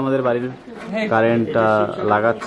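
A man's low voice in two drawn-out, level-pitched stretches, the first near the start and the second from about a second in.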